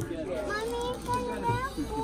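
Indistinct background voices, children's among them, talking over one another without clear words: ambient shop chatter.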